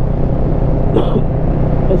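Kawasaki Versys 650's parallel-twin engine running steadily at cruising speed, a constant low drone mixed with road and wind noise.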